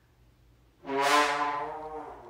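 A brass instrument sounding one loud, long, steady note that starts suddenly about a second in.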